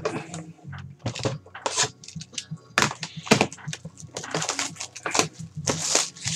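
Clear plastic shrink wrap being torn and crinkled off a sealed Panini Prizm basketball card hobby box: an irregular run of sharp crackles and rustles, busier in the second half.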